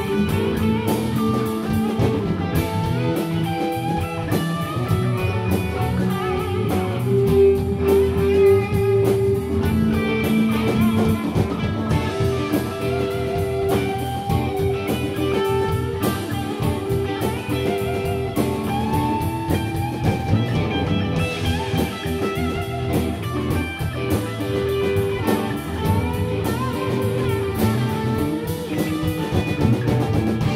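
Live instrumental rock jam: two electric guitars, bass guitar and drum kit playing together through amplifiers, with a guitar riff repeating the same note over a steady groove.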